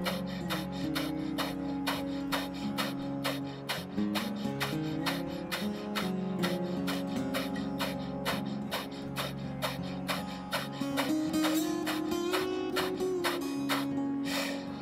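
Rapid, even, forceful nasal exhalations of Kundalini breath of fire, about four a second, over background music with sustained held tones.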